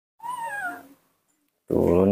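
A baby monkey gives one short, high-pitched call that falls in pitch. Near the end, a person's low voice begins.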